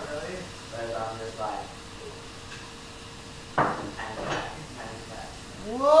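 Quiet, indistinct talking over a faint steady hum, with one sharp clatter about three and a half seconds in.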